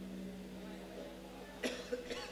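A person coughing briefly, a short burst about one and a half seconds in, with a smaller one just after. Faint background music fades away early on.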